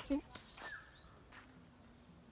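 Quiet rural ambience: a steady, high-pitched insect drone with a few faint, short bird chirps.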